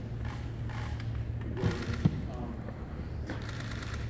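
Faint voices in the room over a steady low hum, with two sharp clicks less than half a second apart about midway.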